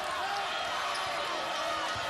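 Basketball arena crowd murmuring steadily, with a basketball bouncing on the hardwood court.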